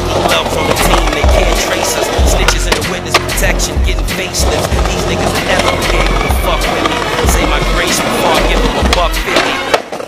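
Skateboard wheels rolling on concrete with sharp board clacks, over a hip-hop beat with a heavy, regular bass pulse. The music drops out just before the end.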